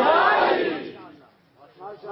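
A man's loud, impassioned cry over a PA system, rising in pitch at the start and then fading away within about a second. After a short pause, speech begins again near the end.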